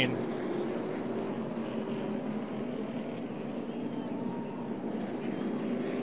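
Steady drone of NASCAR Cup stock cars' V8 engines running at speed on the track, holding an even pitch.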